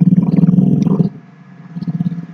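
A low, rough, drawn-out vocal sound like a creaky hum, lasting about the first second, then a shorter, quieter one near the end.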